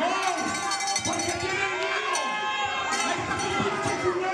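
Crowd of spectators shouting and cheering over one another, loud and busy, with no single voice standing out.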